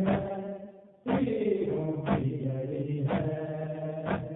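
Male voice chanting an Urdu noha, a Shia lament, in long held notes over a beat struck about once a second. The voice trails off just before a second in and starts a new line on the next beat.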